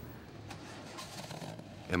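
Faint steady background noise, a low hum with hiss, in a gap between spoken lines.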